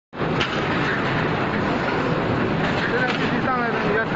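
Steady, loud machinery noise from a steel-sheet processing line running in a factory hall. A voice cuts in briefly near the end.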